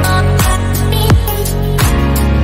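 Instrumental background music with a steady beat, a deep drum hit falling about every three-quarters of a second under sustained notes.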